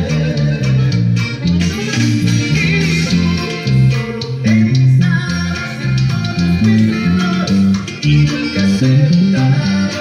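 Five-string electric bass playing a norteño "golpe" bass line: a steady run of plucked low notes that moves from pitch to pitch.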